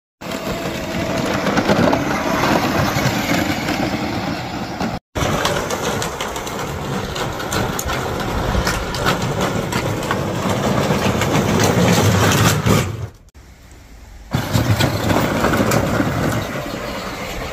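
Power Wheels Jeep ride-on toy running on a 20-volt battery: its electric drive motors and plastic gearboxes whir as the hard plastic wheels roll and rattle over grass and pavement. The sound drops away briefly about thirteen seconds in, then picks up again.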